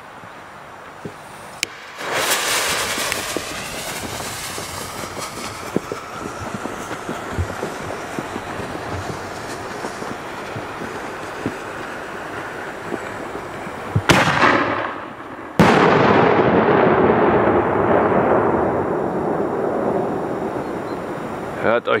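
Funke Kolpo 45 Spezial salute firework: after about twelve seconds of steady hissing, a sharp crack as it fires from its tube, then a second and a half later a very loud bang that rolls on in a long echo, dying away over several seconds.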